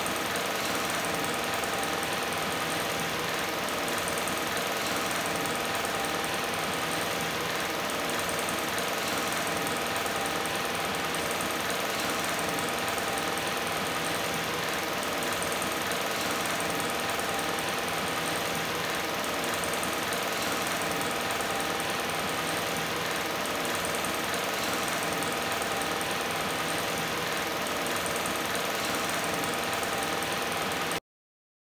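Metal-caged electric table fan running, a steady hum with a few fixed tones over an even hiss.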